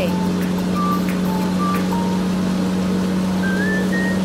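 Engine sound effect for a backhoe loader working, a steady low hum over a noisy rumble that holds level throughout, as the machine pushes a truck free of mud.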